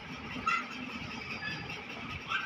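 Low background hiss with faint, indistinct voices.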